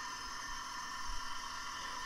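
Electric walk-behind concrete saw cutting a slab, with its shop vacuum pulling the dust, heard faintly as a steady, thin high-pitched hiss with no low end.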